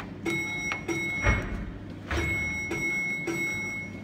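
Electronic signal bell of an interactive mine-shaft cage signalling exhibit sounding twice, each a steady high ring held about two seconds. Several light knocks fall among the rings.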